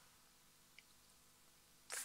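Near silence: room tone, with one faint click a little before a second in.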